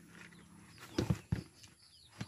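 Two dull knocks close together about a second in, from a plastic bucket of rabbit kits being handled against a wire cage, with faint bird chirps near the end.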